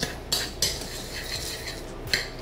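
Metal spoon stirring dry graham cracker crumbs and sugar in a bowl: a few clinks of spoon against the bowl, then a steady gritty scraping through the crumbs.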